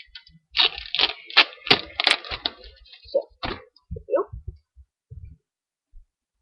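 Foil wrapper of a Pokémon trading-card booster pack crackling and tearing as it is opened by hand, in a quick run of sharp crinkles lasting about three seconds, then a few lighter rustles.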